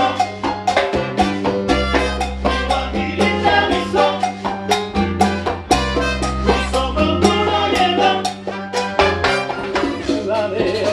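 Live salsa band playing an instrumental passage: a horn section over a bass line on held low notes, with congas and a drum kit keeping a steady beat.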